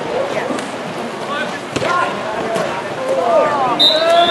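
Voices of players and spectators calling out over the noise of a water polo game in an outdoor pool, with a sharp knock about two seconds in and a short, high whistle blast near the end.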